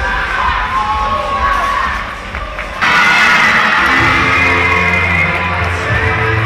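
A group of women cheering and shouting in high voices. About three seconds in, the cheering jumps suddenly to loud screaming. About a second later, music with a steady bass line comes in under it.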